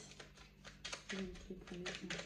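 A deck of oracle cards being shuffled by hand: a quick, irregular run of soft card-on-card clicks.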